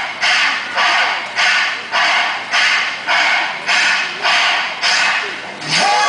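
Rhythmic, hissy mechanical-sounding pulses repeating a little under twice a second, the intro of a backing track played loud over a speaker; the music proper starts right at the end.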